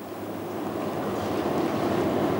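Even room-noise hiss with no speech, growing gradually louder.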